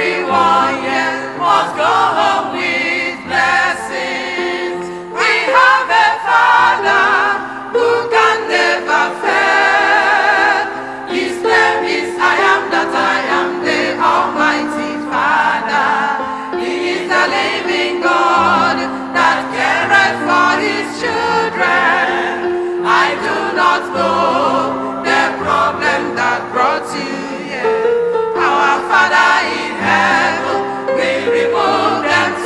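A large church choir singing a gospel song into microphones, many voices together in sustained phrases throughout.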